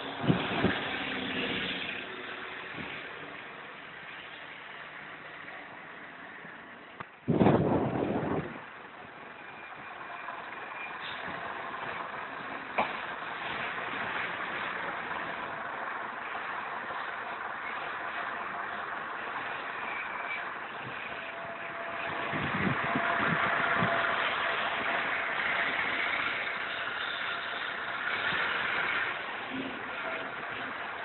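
Diesel buses running and moving off in a bus station yard, a bus engine rising and passing close by in the last third. A loud short burst of noise comes about seven seconds in.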